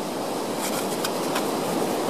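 Steady rushing noise of sea surf on a beach, with a few faint clicks.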